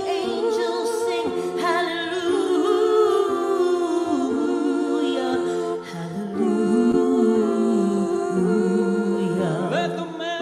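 A woman and a man singing a duet in harmony, with long held notes that waver and slide in pitch, and one short break near the middle.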